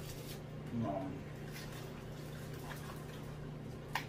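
A small cardboard box being handled and opened by hand: faint scrapes and rustles, with one sharp click near the end, over a steady low hum.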